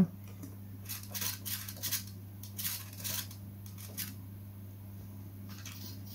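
Faint, scattered clicks and light scrapes of hands handling a small foam RC model plane, several in the first half and then stopping, over a steady low electrical hum.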